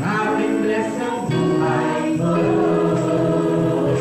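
Gospel choir singing, the voices coming in strongly right at the start.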